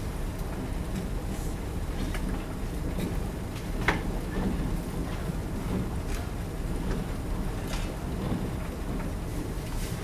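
A marker writing on a whiteboard: scattered short scratches and taps, one sharper tap about four seconds in, over a steady low room rumble.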